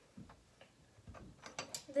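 Faint clicks and taps of small plastic toy playset pieces being handled, a few scattered ones in the second half after a near-silent first second.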